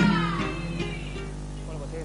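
Comparsa choir singing a phrase whose voices slide down in pitch and fade away. A voice starts talking near the end.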